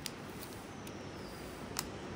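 Quiet room tone with two faint sharp clicks, one just after the start and one near the end, as a dissecting blade cuts the tough dura mater over the brain.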